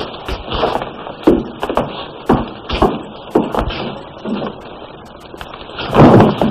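Irregular thuds and knocks on a wooden floor, about two a second, dying away near the end.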